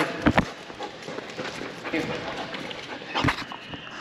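Knocks and scuffs from a young Belgian Malinois moving about during tug play, picked up close by a camera strapped to the dog: two sharp knocks near the start and one near the end, under a man's brief spoken word.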